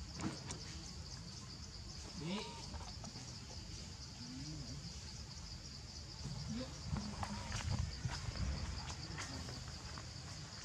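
Macaque giving a few short cries that rise in pitch, the clearest about two seconds in, over a steady high drone of insects. Louder low rustling and thumps come in the second half.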